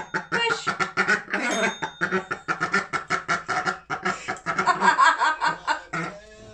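People laughing, with a short high ring from a small tap bell about one and a half seconds in.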